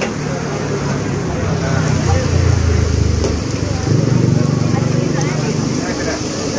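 A motor vehicle's engine running close by, a steady low rumble that swells twice, about two seconds in and again about four seconds in, over background chatter.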